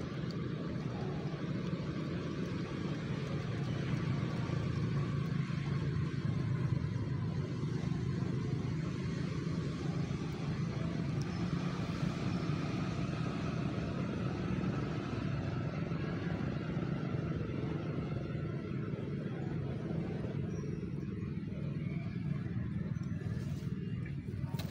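Steady low rumble of a motor vehicle engine running, with its pitch faintly rising and falling around the middle.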